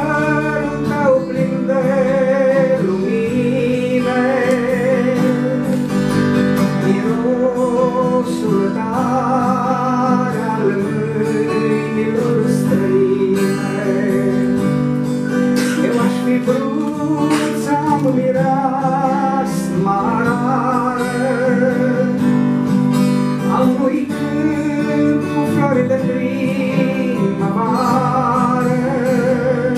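A man singing a slow song to his own acoustic guitar accompaniment. The voice holds long notes with a wavering vibrato over the guitar's steady chords.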